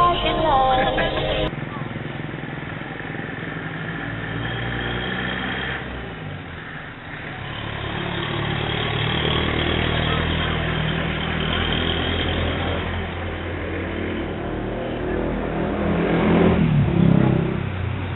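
Music cuts off abruptly about a second and a half in. After it comes the steady rumble of a moving vehicle's engine and road noise, with voices in the background that grow louder near the end.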